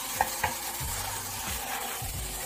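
Whole masala-coated chickens frying in an oiled pan with a steady sizzle as they are turned over by hand among shallots and chillies. Two sharp clicks in quick succession near the start, about a quarter second apart.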